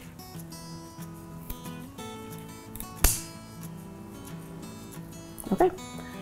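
A single sharp snip about three seconds in as scissors cut through a phalaenopsis orchid's flower spike at the base of the plant, over soft acoustic guitar background music.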